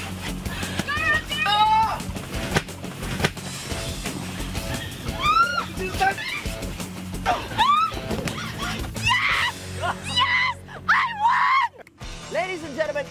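Background music playing under repeated excited shrieks and shouts from people scrambling through an inflatable obstacle. The music drops out briefly near the end.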